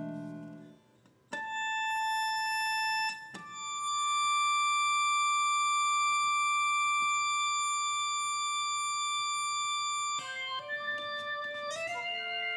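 Acoustic steel-string guitar driven by the Vo-96 acoustic synthesizer. A note is plucked about a second in and a second one a couple of seconds later, and each rings on at a steady level without fading. Near the end several sustained notes sound together and step upward in pitch.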